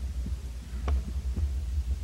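Low, steady electrical hum with a couple of faint knocks in a pause between speakers.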